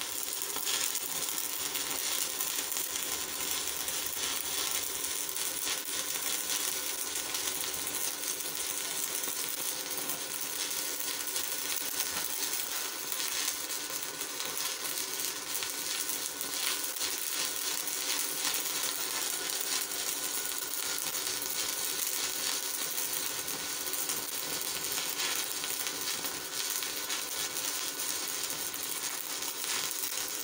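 Stick (MMA) welding arc crackling steadily for the whole stretch as a Monolit electrode burns at about 150 amps on a DEKO 200 inverter welder; the arc holds without going out.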